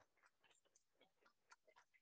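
Near silence, with a few faint scattered claps as applause dies away; one is a little stronger about one and a half seconds in.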